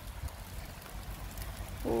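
Light rain falling, a faint steady patter, with a low rumble underneath.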